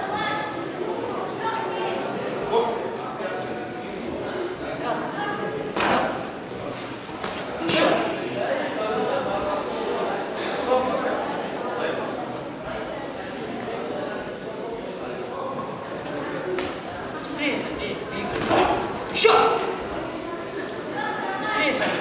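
Voices calling out and talking in a large, echoing sports hall around a boxing ring, with a few sharp knocks about six, eight and nineteen seconds in.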